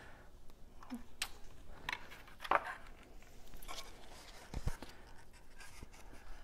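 Faint handling noise: a few scattered scratches and light taps as a plastic battery case is positioned and pressed onto a wooden cutout and the piece is picked up.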